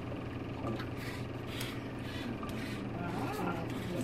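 Steady low room hum with a few light clicks in the first two seconds and faint murmured voices about three seconds in.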